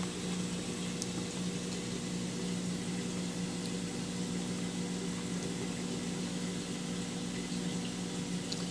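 Aquarium pump and circulating water: a steady motor hum under an even wash of water noise.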